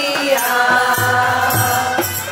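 Women singing a Chhath devotional folk song together in long held notes, accompanied by a drum beat.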